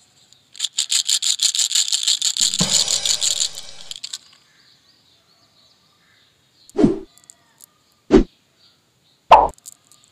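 Small hard sugar-coated candy beans rattling quickly inside a small plastic box for about three seconds as they are shaken and tipped out into a palm. Three dull knocks follow, a little over a second apart, near the end.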